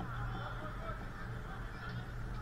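Faint distant shouts and calls from players on a floodlit artificial-turf football pitch, over a steady low hum.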